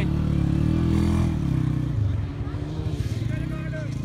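A motor engine running, a low steady hum that is loudest for the first two seconds and then drops away. Faint voices sound under it.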